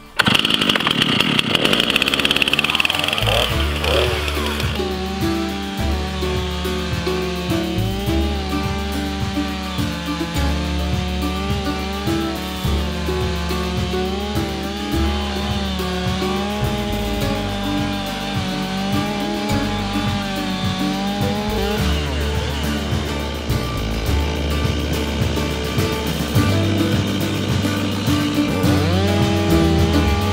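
Stihl chainsaw, mounted in a Haddon Lumbermaker mill attachment, ripping lengthwise along a cedar log. It runs high-pitched for the first few seconds, then settles into a lower pitch that wavers as the engine loads up and eases off in the cut.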